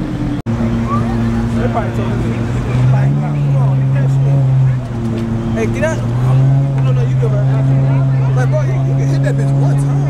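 Lamborghini engine running at low revs as the car creeps along. Its pitch steps up about three seconds in, drops back, and rises again a second later, over crowd chatter.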